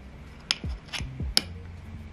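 Sharp metallic clicks, three of them, as a 6202 ball bearing is pushed by hand into its seat in the scooter's hub motor housing, over background music with a thumping beat.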